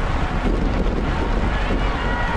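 Wind rushing over the microphone of a bike-mounted camera on a road bike moving at about 25 mph, a loud steady rush. A faint high steady tone starts a little after a second in.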